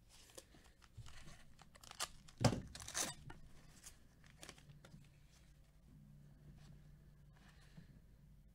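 A trading-card pack wrapper torn open and crinkled by hand: a few sharp rips and crackles in the first three seconds, then only faint rustling as the cards are handled.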